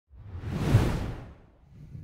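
A single whoosh sound effect that swells to a peak just under a second in and fades away by about a second and a half.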